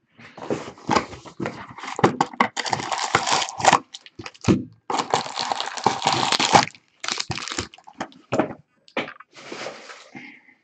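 A cardboard trading-card hobby box being opened and its foil-wrapped packs taken out: rustling, scraping and crinkling of cardboard and foil with many sharp clicks, in dense stretches up to about seven seconds in, then a few separate taps and knocks as the packs are set down.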